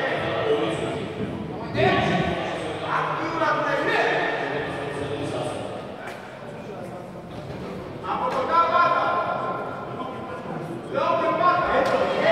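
Men's voices calling out in a large sports hall, in several stretches with short lulls between, loudest in the last second or so.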